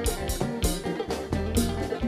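Live Haitian konpa band playing an instrumental passage: electric guitar over drum kit and percussion, with a steady, even dance beat.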